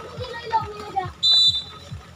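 A referee's whistle gives one short, shrill blast about a second in, signalling the next serve, over background voices.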